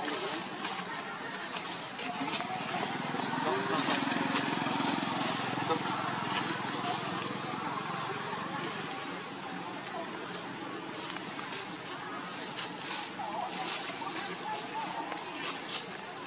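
Indistinct, unintelligible voices over a steady background hiss, with scattered small clicks and crackles.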